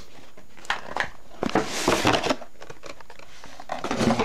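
Packaging rustling and crinkling as accessories are handled out of a cable box, with a few light clicks and a longer rustle near the middle.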